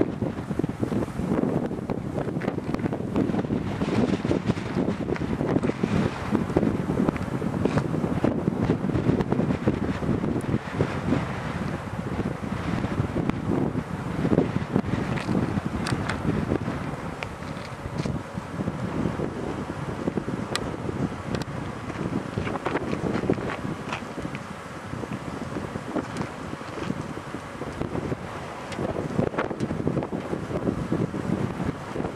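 Strong wind buffeting the microphone in irregular gusts, a continuous rough rumbling noise.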